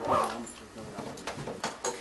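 A short vocal sound at the start, then a series of sharp clicks and rustles from papers being handled at a lectern fitted with microphones.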